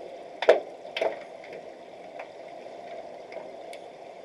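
Underwater hockey game heard through the water of a pool: a steady underwater hum, with two sharp knocks about half a second apart near the start and a few faint ticks after, like sticks and puck striking.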